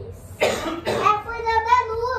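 A single cough about half a second in, followed by a child's voice talking.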